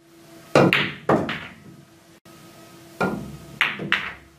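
A pool cue tip striking the cue ball, then sharp clacks of the balls colliding and knocking. A second shot near the end gives another strike and two quick clacks.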